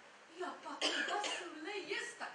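A woman's voice on stage, quiet at first, then a sudden cough a little under a second in, followed by speech.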